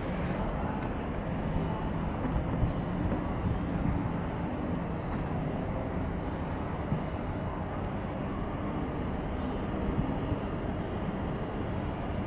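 Steady low rumble of outdoor city background noise, with no single event standing out.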